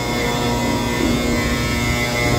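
Steady mechanical drone, a stack of constant tones over a rush of air, from the blower that pushes powdered cement by air pressure through a hose into a site-spreader truck.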